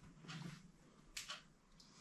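Near silence in a small room, with two brief faint sounds: a soft one about a third of a second in and a short click a little over a second in.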